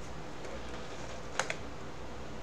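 Two quick computer-keyboard clicks, a fraction of a second apart, about a second and a half in, over a steady low hiss.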